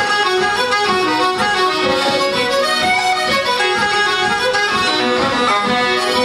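Traditional Irish tune played live by fiddle, uilleann pipes and accordion together, a continuous run of quick notes at a steady pace.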